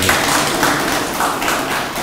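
A room of people applauding, breaking out suddenly and dying down near the end.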